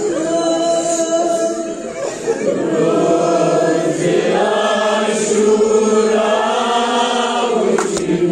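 A noha, a Shia mourning elegy, chanted by a boy into a microphone with a group of men's voices joining in. It comes in two long drawn-out phrases: a short one that breaks off about two seconds in, then a longer one lasting until near the end.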